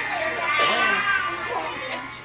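Indistinct overlapping talk of several people, children's high voices among them.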